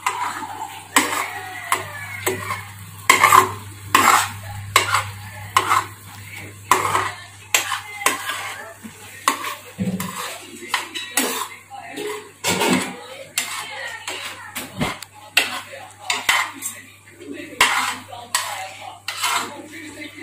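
A steel spoon stirring noodles in a metal kadhai, scraping and clinking against the pan in irregular knocks about once a second.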